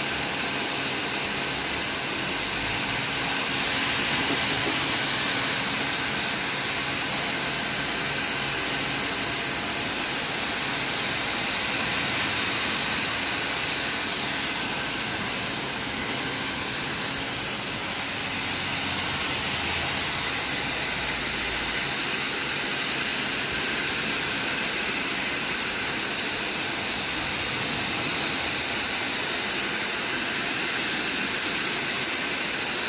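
Pressure washer blasting a high-pressure water jet onto the tiled floor of an empty swimming pool: a steady, even hiss.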